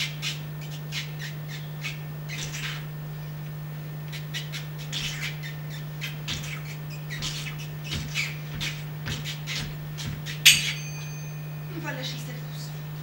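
A string of short, irregular hissing swishes made by two performers as sound effects for crossing an obstacle. Near the end comes a single bright strike of small finger cymbals that rings on.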